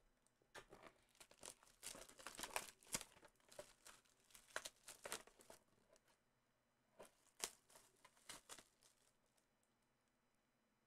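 Faint crinkling and tearing of trading-card packaging as a cardboard blaster box is torn open and its plastic-wrapped card pack is handled. Irregular crackles come thickest in the first few seconds, with a few isolated ones later on.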